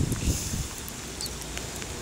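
Light rain pattering as a steady hiss with faint scattered ticks, and low rumbling on the microphone in the first half second or so.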